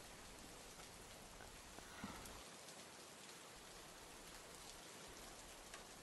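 Near silence: a faint steady hiss of room tone, with no starter or engine sound.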